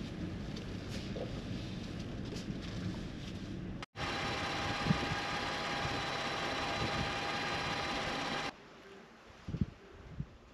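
Thor Gemini motorhome's engine and road noise heard from the cab as it rolls slowly into a campsite. After a sudden break comes a steady mechanical hum with several faint high whining tones. It drops away about two-thirds of the way through, leaving quieter sound with a couple of light knocks near the end.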